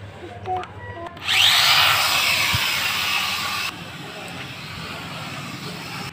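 Toy quadcopter's motors and propellers spinning up about a second in with a quickly rising whine, running loud for a couple of seconds, then dropping abruptly to a quieter steady buzz.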